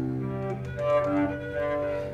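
Solo cello bowed slowly: a low note held steady beneath a higher line that moves to a new held pitch about every half second.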